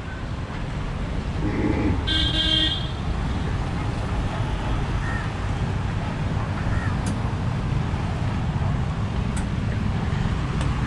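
Steady low background rumble at an outdoor charging station by a road, with one short, high-pitched toot about two seconds in.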